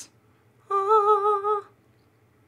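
A woman humming one steady note for about a second.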